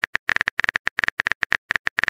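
Rapid, irregular keyboard typing clicks, about ten a second: the typing sound effect of a texting-story chat app as a message is composed.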